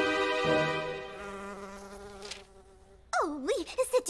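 A fly buzzing: a steady droning hum that fades away over about two seconds. A brief vocal exclamation follows near the end.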